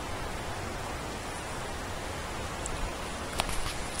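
Steady rushing hiss of river water flowing, with a couple of faint clicks about three seconds in.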